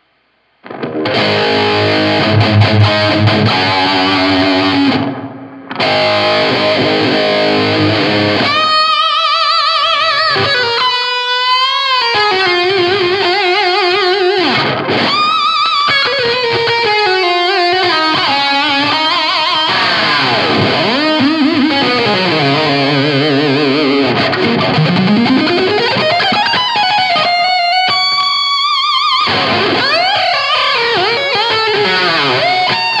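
Electric guitar solo on an ESP LTD through NUX Reissue Series pedals with a little distortion: single-note lines with wide vibrato, string bends and fast runs, and a long slide upward about two-thirds of the way through. It starts about a second in and briefly drops out about five seconds in.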